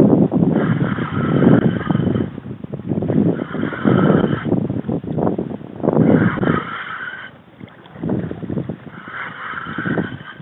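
Choppy seawater rushing and splashing against a kayak hull in surges every second or two, with wind buffeting the microphone; the surges ease off after about seven seconds.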